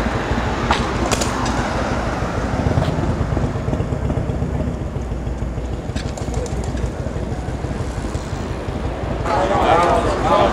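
An engine running with a low, steady rumble, with a few faint clicks over it; voices break in near the end.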